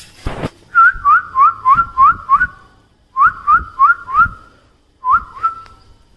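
A person whistling in short, quick rising chirps in three runs (six, then four, then two), about four a second, calling on the dogs. A single low thump comes just before the first run.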